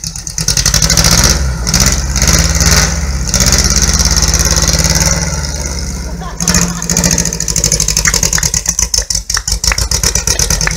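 Classic VW Beetle's air-cooled flat-four engine running and being revved, held up for several seconds, easing off and then picking up sharply again about six seconds in.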